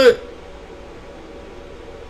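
A man's voice finishes a word at the very start, then a steady faint hiss of room tone with no other sound.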